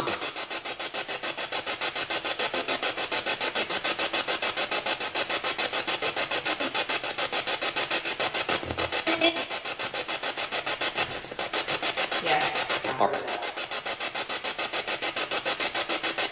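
Spirit box (ghost box) sweeping through radio stations: a fast, even rasping pulse of chopped radio static, with brief snatches of voice-like sound around the middle and again a few seconds before the end.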